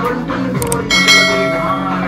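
Dance music playing, with a bright bell-like ding about a second in, just after two quick clicks. This is the notification-bell sound effect of a subscribe-button animation.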